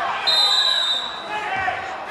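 Referee's whistle blown once, a single steady shrill blast of under a second, stopping the wrestling action, with spectators' voices around it.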